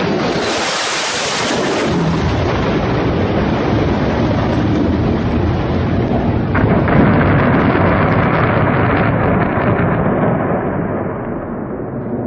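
Jet aircraft noise swelling in the first two seconds, then a long rolling rumble of bomb explosions from an air strike on a city, with a sharper blast about six and a half seconds in.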